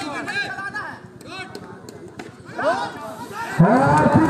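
Crowd and players' voices shouting and chattering over one another, with a man's louder voice breaking in near the end.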